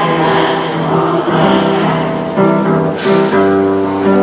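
A woman singing into a microphone to her own upright piano accompaniment, in held notes that step from pitch to pitch.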